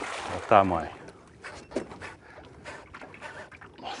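A big hooked redtail catfish (pirarara) splashing at the river surface as it is fought on rod and line, followed about half a second in by a man's loud exclamation that falls in pitch. Faint scattered clicks follow.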